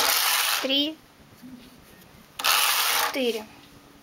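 Knitting machine carriage pushed across the metal needle bed twice, knitting two rows: each pass is a noisy sweep of about half a second, the first right at the start and the second about two and a half seconds in.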